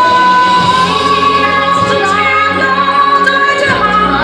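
Two women's voices singing a stage-musical ballad in long held notes in harmony, over orchestral accompaniment.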